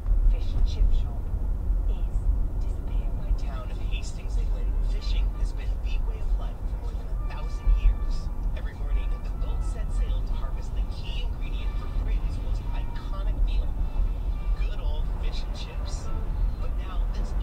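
Steady low road and engine rumble inside a moving car's cabin, with faint, indistinct talk underneath.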